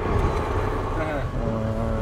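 Heavy truck's engine running while driving, heard from inside the cab as a steady low rumble. A short pitched sound, like a voice holding a note, comes in over it in the second half.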